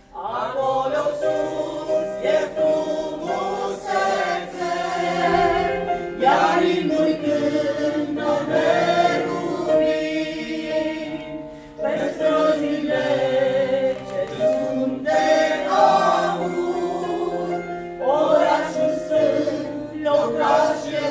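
A small mixed choir of women and men singing a Romanian Christian hymn together, in sung phrases with short breaks between them about every six seconds.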